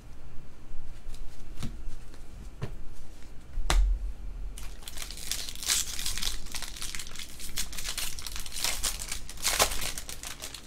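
A few light clicks as a stack of baseball cards is handled, then, from about halfway through, a Topps foil card pack crinkling and tearing as it is ripped open by hand.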